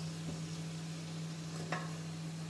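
Cauliflower florets and potato pieces sizzling gently in oil as they are stir-fried in a pan with a spatula, over a steady hum, with one light tick of the spatula near the end.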